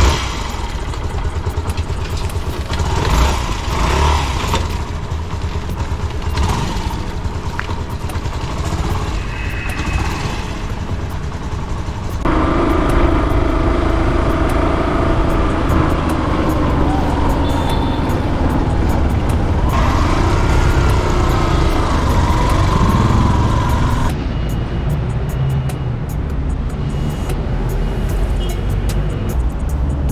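Yamaha motorcycle starting and riding through city traffic: steady low engine and road rumble, heard in several stretches that cut abruptly from one to the next. The middle stretch carries steady pitched tones as well.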